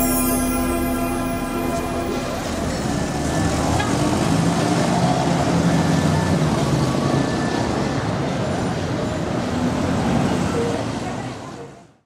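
A held organ chord dies away about two seconds in, giving way to busy street ambience: a crowd of people talking and traffic noise. The ambience fades out near the end.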